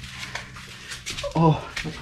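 Faint scuffs and scrapes of someone clambering over rock, then a short breathy "oh" of effort a little past halfway.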